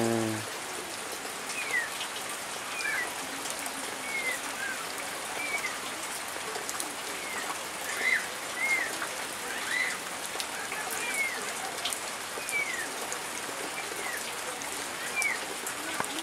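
Steady rain falling, with a bird giving short high chirps, roughly one a second.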